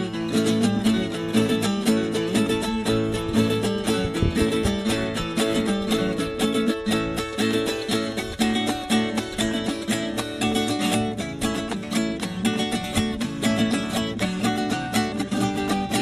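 A viola caipira and a six-string acoustic guitar playing an instrumental intro together in the sertanejo 'batidão da viola' style, a steady, quick strummed and plucked rhythm.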